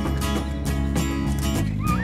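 Music with strummed acoustic guitar in a steady rhythm. Near the end a brief wavering high sound glides over it.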